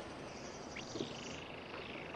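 Tropical forest ambience: a rapid, high-pitched animal trill starts about a second in and runs on over a faint steady hiss.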